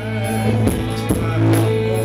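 Live band music: sustained bass and chord tones with drum hits about every half second.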